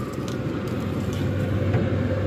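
Pit Boss pellet smoker running: a steady hum from its fan and motor, with a light even rush of noise behind it.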